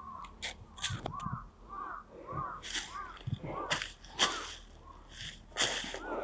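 Crows cawing over and over, short arched calls about two a second, with footsteps crunching through dry leaf litter.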